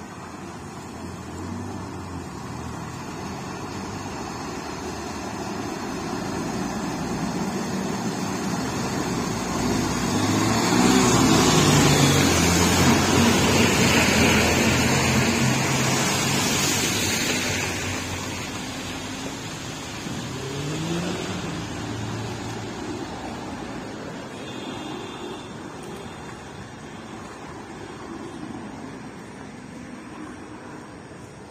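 A motor vehicle drives through standing floodwater on the road and passes close by: its engine and the swish of tyres through the water build to a peak about halfway through, then fade away. Shortly after, an engine revs up briefly.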